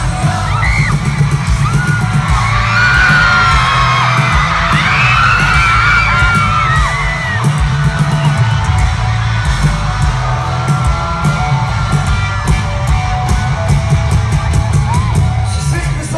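A live rock band playing loudly, with heavy drums and bass, and a concert crowd screaming over it in many high, rising and falling shrieks, thickest between about two and seven seconds in.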